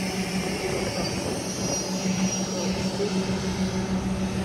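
Parked Greyhound coach bus idling: a steady low drone under an even hiss, unchanging throughout.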